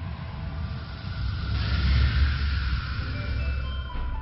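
Cinematic intro sound effect under music: a rushing whoosh with a deep low rumble that swells to its loudest about two seconds in, then eases off.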